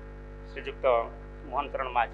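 A man's voice speaking through podium microphones in two short phrases, over a steady electrical mains hum.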